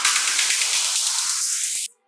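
Electronic dance music build-up in a DJ remix: a hissing noise riser with a filter sweeping upward so the low end steadily thins out, over a fast pulse, then a sudden cut to silence near the end.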